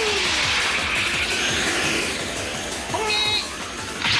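Cartoon soundtrack of background music and action sound effects. A pitched cry falls away at the start, a rushing noise runs through the middle, and a short high cry comes about three seconds in.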